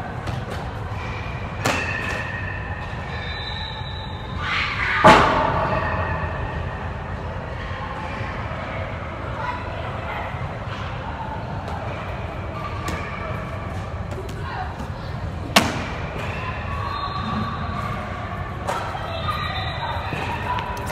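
Sharp thuds echoing in a large hard-walled hall, three in all, the loudest about five seconds in, over the steady din of a busy indoor sports facility with distant voices.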